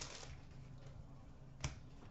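Quiet handling of hockey trading cards, with one sharp card click near the end.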